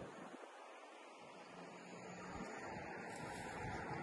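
Quiet outdoor ambience: a faint, steady rushing hiss, growing slightly louder toward the end.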